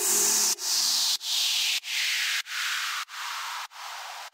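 Outro of an electronic dance remix: a rhythmic pulse of noise repeating about every 0.6 s, growing steadily darker as a filter sweeps down, and fading out. A low held tone sounds under it for the first couple of seconds, then stops.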